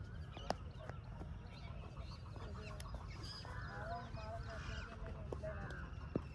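Background bird calls: short, repeated pitched notes, thickest in the second half. A few sharp knocks, the loudest about half a second in.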